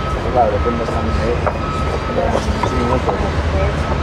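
Steady low rumble of city street traffic with faint, indistinct voices talking.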